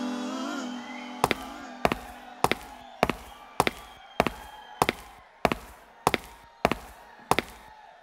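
A steady series of eleven sharp clicks, about one every 0.6 seconds, growing fainter: a drummer clicking sticks to keep the tempo before the band comes in. A sung note dies away just before the clicks start.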